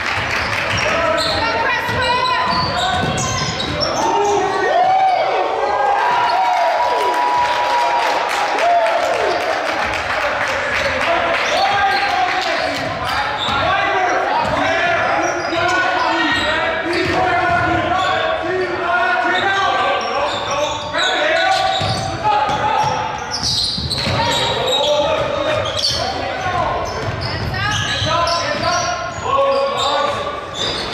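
A basketball dribbling and bouncing on a hardwood gym floor during a game, the strikes ringing in a large hall. Players and spectators call out throughout.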